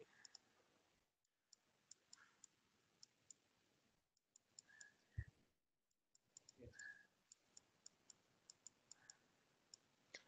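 Near silence: quiet room tone with faint, scattered short clicks.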